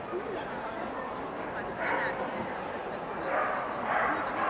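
A dog barking and yipping over steady crowd chatter, with bursts about halfway through and again near the end.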